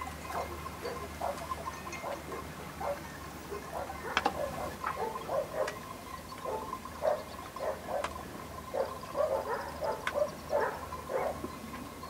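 A chorus of many short animal calls, coming irregularly and overlapping, over a faint steady hum.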